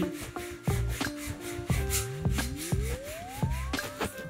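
A kitchen scouring pad scrubbed back and forth in repeated strokes against the metal bolt carrier of a Winchester SX3 shotgun, rubbing off caked carbon fouling. Background music plays throughout, with a tone gliding upward in the second half.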